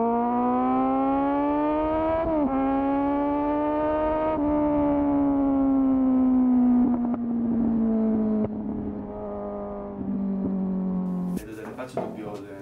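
Kawasaki Z1000 inline-four motorcycle engine revving up through the gears, with two quick breaks in the note as it shifts up, then the engine speed winding down slowly until the sound cuts off abruptly near the end.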